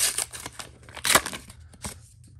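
A trading-card pack wrapper being torn open by hand, in short rips, the loudest about a second in.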